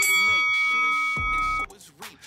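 Electronic workout interval timer sounding one long, steady, high beep that stops abruptly about a second and a half in, signalling the end of a work interval. A voice is heard faintly under it.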